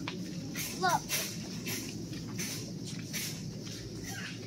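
Shuffling footsteps on a hard store floor over a steady background hum, with a child's short exclamation about a second in.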